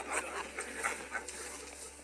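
A group of men laughing and chuckling in short, irregular bursts.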